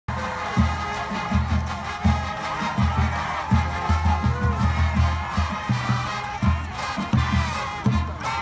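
Loud music with a pounding bass line and sustained higher notes, over the murmur of a stadium crowd.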